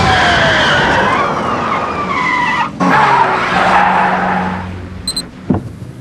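Car tyres skidding and screeching, with gliding squeal tones over loud road noise, broken off abruptly near the three-second mark. A steady low engine hum follows and fades away, ending with a short high beep and a click.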